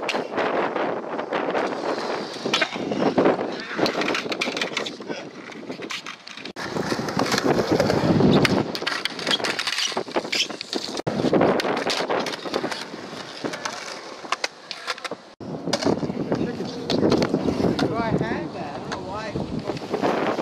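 Kick scooter and skateboard wheels rolling on concrete ramps, with repeated sharp clacks of decks and wheels hitting the concrete, over voices in the background.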